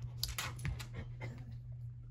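A basset hound settling down onto a rug on a wood floor: a quick run of scuffs and clicks lasting about a second, over a steady low hum.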